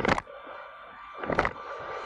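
Camera tripod being adjusted: a short sharp knock at the start and a brief creak about 1.4 s in. Underneath, a faint steady hum from the 3D printer's cooling fan.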